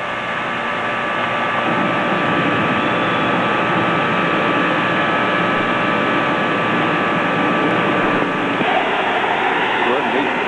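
Small gas burner flame running with a steady rushing noise as it heats a cast aluminum compressor head before welding. It grows louder over the first two seconds, then holds steady.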